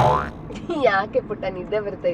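A loud comedic sound effect right at the start, a short burst whose pitch sweeps quickly upward like a boing. Then a person talks over low car-cabin noise.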